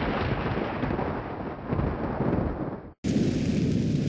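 Thunderstorm sound effect: a steady rumble of thunder under the hiss of heavy rain. About three seconds in it cuts out for an instant and a different, brighter stretch of rain and thunder takes over.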